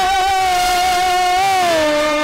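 A male voice holding one long vowel note of a Telugu drama padyam (a sung verse), with a strong, nasal ring of many overtones; near the end it slides down and settles on a lower note.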